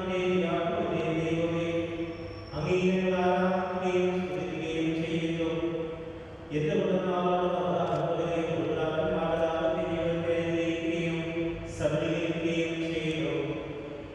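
Voices chanting a sung prayer in long held phrases, with brief pauses about two and a half, six and a half and twelve seconds in.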